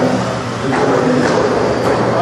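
Several 1/16-scale Traxxas electric RC cars racing on an indoor carpet track: a continuous mix of electric motor whine and tyre noise. A couple of brief knocks stand out, about two-thirds of a second and nearly two seconds in.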